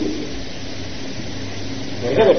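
Steady background hiss with a faint low hum, the noise floor of the sermon recording.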